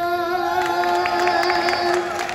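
A boy's voice holds the song's final long note over guitar backing as the song closes. Scattered hand claps join in from about halfway through.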